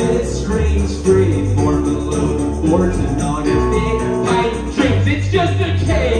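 A live rock band playing through a PA: electric guitar over drums and a low, steady bass line, in a short gap between sung lines.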